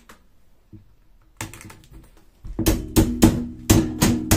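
Steel wire shelf of a black Daiso joint rack being worked onto its steel poles: a few light metal clicks, then from about two and a half seconds in a run of loud ringing metal knocks, several a second.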